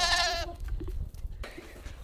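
Goat bleating: one wavering call that ends about half a second in, followed by quieter low background noise.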